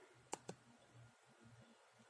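Two short, faint clicks about a fifth of a second apart: a computer's trackpad or mouse button pressed and released to click an on-screen button. Otherwise near-silent room tone.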